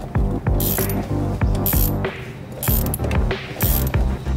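Ratcheting spanner clicking in quick runs as it turns the top nut of a rear shock absorber, over background music with a steady beat.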